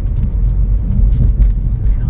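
Steady low road rumble heard inside a moving car's cabin.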